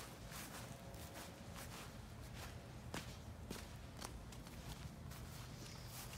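Footsteps walking over snow-dusted grass and leaf mulch, soft, faint crunches about every half second.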